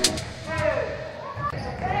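Live sound of a basketball game in a large sports hall: a few short voices calling out and a basketball bouncing on the wooden floor.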